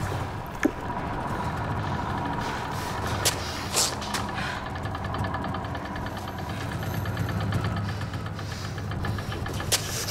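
A low, steady, engine-like rumble with a faint hum, broken by one sharp click just over half a second in and two brief hissing swells a little past three seconds.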